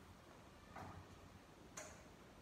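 Near silence broken by two faint clicks, about a second apart, the second sharper.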